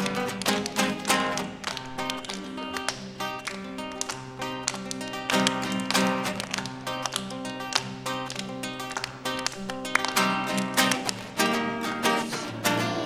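Acoustic guitar strummed in a steady rhythm, playing an instrumental passage of a Christmas carol, with small children clapping along.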